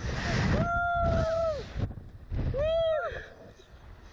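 A rider on a slingshot reverse-bungee ride letting out two long, high, held screams, the first about half a second in and the second near the three-second mark, over wind rushing across the microphone as the seat swings through the air.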